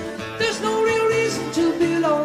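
Live rock band music in an instrumental passage, several instruments holding pitched notes, guitar among them.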